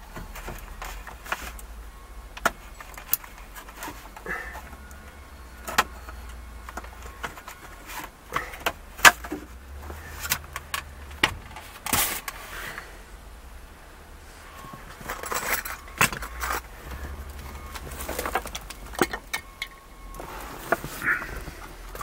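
Scattered clicks, taps and light rattles of plastic dashboard trim and its wiring being handled, the loudest a sharp click about nine seconds in, over a faint low steady hum.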